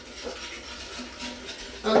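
Hand whisk stirring beaten egg yolks in a glass bowl, faint light clicks and scraping against the glass, while warm evaporated milk is poured in a little at a time to temper the eggs.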